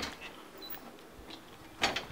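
Faint footsteps and movement as a person walks out of a room through a doorway, with light ticks throughout and a sharper click near the end.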